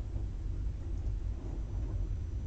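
Steady low hum of background room noise, with no distinct sound on top of it.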